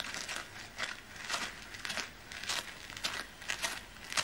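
Footsteps crunching on dry ground, about two steps a second.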